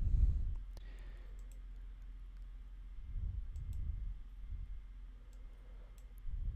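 Computer mouse clicking faintly several times, scattered across a few seconds, over a low room rumble.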